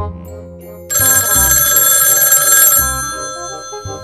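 Background music with a steady beat; about a second in, a loud bell rings in the manner of an old telephone ringer for nearly two seconds, then fades.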